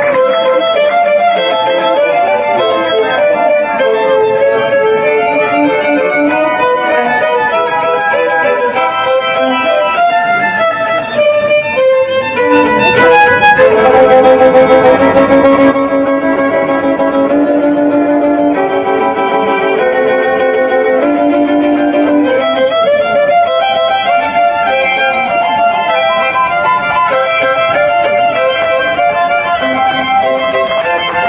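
A violin playing a slow melody over an accompaniment. About halfway through, a few seconds of harsh crackling noise sit over the music and are the loudest part.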